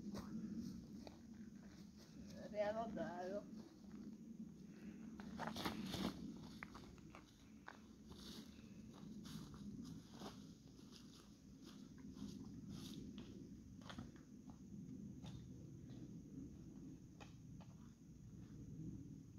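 Quiet footsteps crunching over dry leaf litter and loose stones, with a short wavering voice call about two and a half seconds in.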